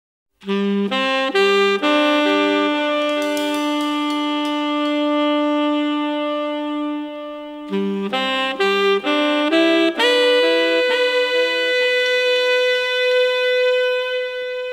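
Instrumental jazz led by a saxophone: a few short notes, then a long held note of about six seconds, then another run of short notes and another long held note.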